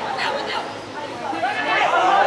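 Several indistinct voices shouting and calling over one another on a football pitch during play: players and spectators at a match.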